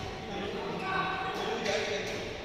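Indistinct voices talking in a large indoor hall, with a few dull thuds.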